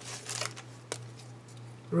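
Hands handling craft supplies: a soft rustle at the start, then one sharp click about a second in, over a steady low electrical hum.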